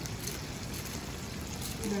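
Steady hiss of falling rain.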